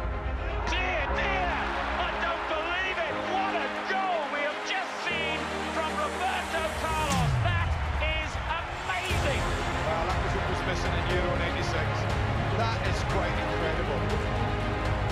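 Cinematic epic trailer music with long sustained low notes and a falling bass sweep about seven seconds in, over indistinct voices.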